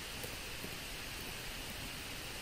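Steady hiss of a recording microphone's background noise, with a few faint clicks from keys being typed.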